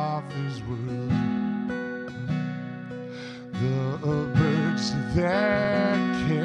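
A man singing a hymn to his own strummed acoustic guitar, the guitar chords ringing steadily under the sung phrases.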